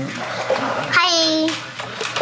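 Plastic toy track pieces and their wrapping rustling and clicking as they are handled. A child says a high-pitched "hi" about a second in.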